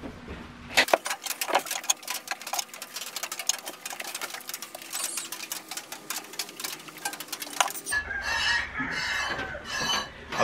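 A dense run of small, rapid clicks and crackles. Near the end, a dairy goat is hand-milked: milk squirts into a metal pot in an even rhythm of about two squirts a second.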